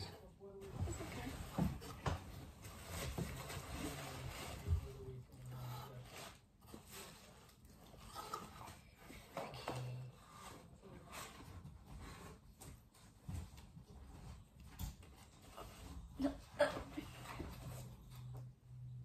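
Tissue paper rustling and crinkling as it is pulled out of a cardboard gift box, in quick irregular crackles.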